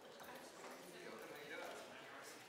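Faint background conversation, several people talking too low for words to be made out.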